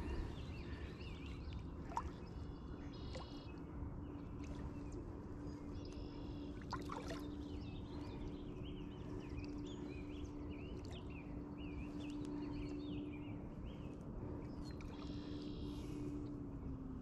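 Quiet outdoor ambience on a lake: birds chirping and singing in the background over a low rumble and a steady low hum, which dips slightly in pitch near the end.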